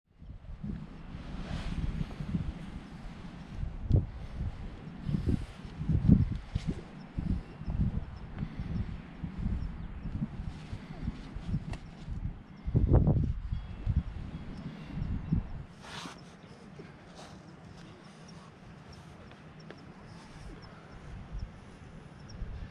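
Wind buffeting the microphone in irregular low gusts, with a few sharp scuffs or knocks; it eases off after about fifteen seconds.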